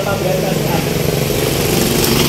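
Small motorcycle engine running steadily close by, with people talking over it.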